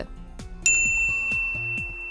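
A single bell ding sound effect, struck about two-thirds of a second in, whose clear high ring fades away slowly, over soft background music.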